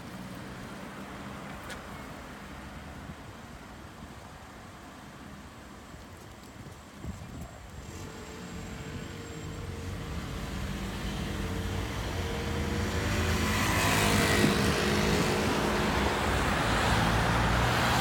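Road traffic on a multi-lane city street: car engines with tyre noise, low at first, growing steadily louder from about halfway through and staying loud near the end.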